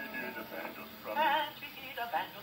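A 1925 Victor 78 rpm record of a male vocal quartet playing on an acoustic gramophone: voices singing in close harmony, with a held, wavering note about a second in.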